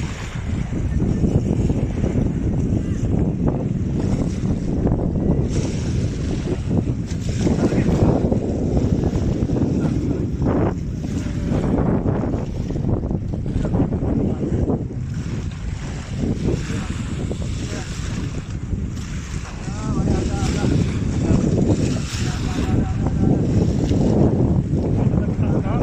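Wind buffeting the microphone in a steady low rumble, over small waves lapping at the shore.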